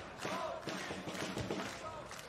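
Arena background music with a steady beat, about two beats a second, and a voice over it.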